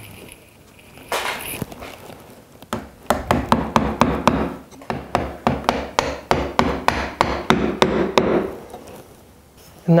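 A bench chisel tapped with a wooden mallet in quick light strikes, about three to four a second, chopping the corners of a through mortise square against a jig. A single scrape of the chisel on wood comes about a second in.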